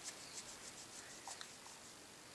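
Fingertip rubbing over pressed blush and bronzer powder to take a swatch: a quick run of faint strokes that fades out after about a second and a half.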